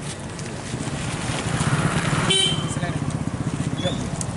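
A small vehicle engine running close by with a fast, even pulsing that grows louder about halfway through, under the voices of people around it.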